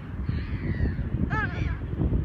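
Low, rough rumble of wind buffeting the microphone, with one brief high-pitched squeak about one and a half seconds in.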